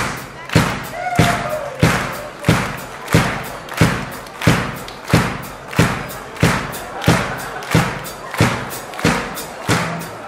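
A drum kit keeping a steady beat alone, kick and snare struck together about one and a half times a second, each hit ringing briefly in the hall.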